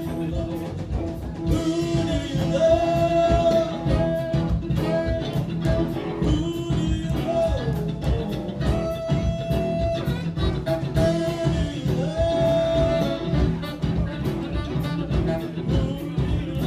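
Live rock band playing: drums, electric guitars, bass and keyboards, with long held lead notes that bend in pitch over a steady beat.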